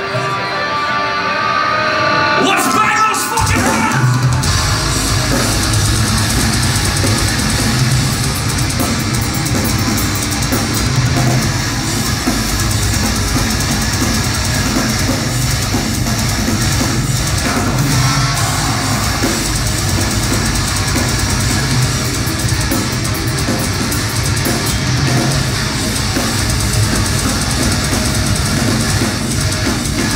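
Heavy metal band playing live: after a brief quieter lead-in, drums and electric guitars come in at full volume about three seconds in and keep going.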